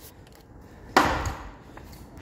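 A single sharp knock about a second in, fading over about half a second.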